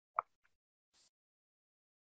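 Near silence on a video-call recording, broken by one short, faint blip about a fifth of a second in.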